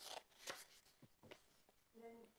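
Near silence, with a few faint, brief rustles of paper sheets being handled close to a desk microphone.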